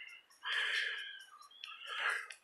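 A bird calling: one drawn-out call about half a second in and another starting near the end, over a faint high-pitched ticking in the background.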